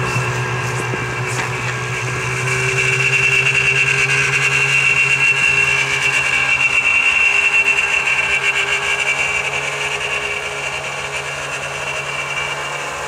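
Snowmobile engine running as the sled drives through the snow. The engine note swells a few seconds in, stays loud through the middle and fades toward the end.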